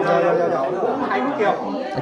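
Only speech: several people chatting at once.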